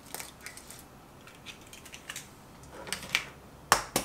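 An egg cracked open by hand over a foil-lined tray: faint crackling and small clicks of shell, with a sharper click near the end.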